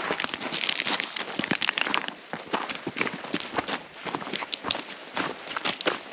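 Footsteps crunching on a gravel hiking trail, a steady run of short strides.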